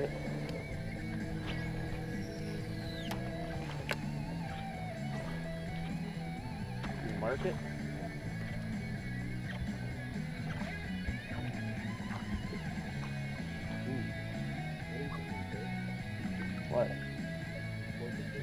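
Guitar rock music playing steadily from a radio, with a few short bursts of men's voices.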